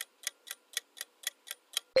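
Quiz countdown timer sound effect: clock ticks, steady at about four a second. Right at the end the ticking gives way to the start of a louder sound effect.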